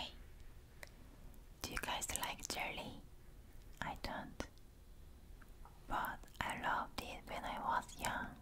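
A woman whispering close to the microphone, in three short phrases with pauses between them.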